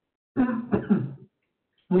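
A person coughing, a short bout of about a second with a couple of sharp onsets.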